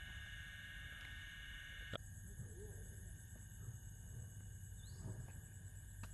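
Faint rural ambience: a steady, high insect chorus over a low rumble of wind. There is a short click about two seconds in, where the chorus changes.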